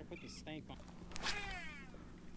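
A faint bird call: one cry falling in pitch, about a second in, over a steady low hum.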